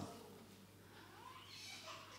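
Near silence with faint room tone, broken about a second in by a small child's faint, high vocalising from the congregation.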